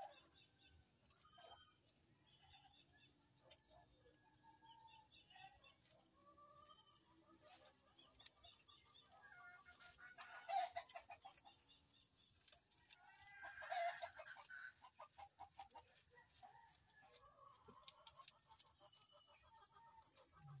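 Chickens clucking faintly and often, with two louder squawks about ten and fourteen seconds in.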